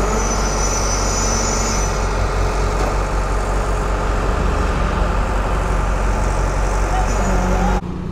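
Concrete mixer truck's diesel engine running steadily while concrete is poured, a faint high hiss over it for about the first two seconds. The sound cuts off suddenly near the end.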